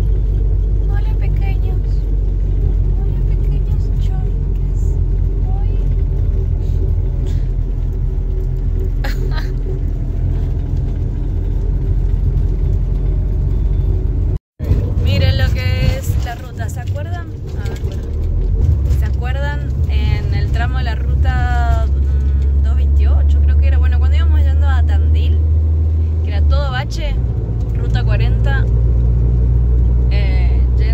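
Steady low rumble of a running vehicle, with people's voices over it. The sound cuts out for an instant about halfway through.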